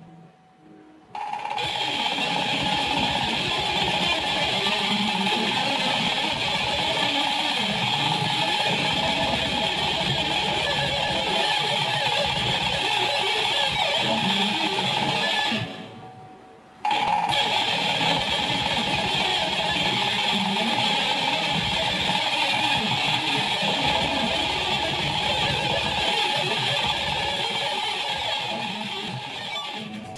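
Electric guitar played through a Marshall amp and picked at very high speed, in a run of tempo steps up to about 999 bpm. The playing breaks off for about a second near the middle and then starts again.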